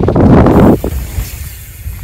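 A mountain bike passing close by on a dirt trail: a short loud rush of tyre and air noise for under a second, fading to a low rumble of wind on the microphone.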